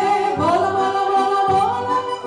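A woman singing long held notes with vibrato into a microphone, accompanied by a piano accordion playing sustained chords and bass notes. The melody steps up in pitch about half a second in and again near the end.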